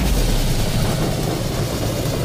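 Fireball sound effect for a video's animated outro: a short burst, then a steady low rumbling rush of noise.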